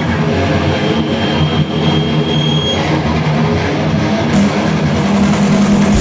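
Live heavy metal band playing loud. Distorted electric guitars and bass carry a riff with the cymbals dropped out, and a thin high whine holds for about two seconds. The full drum kit comes back in a little past four seconds in.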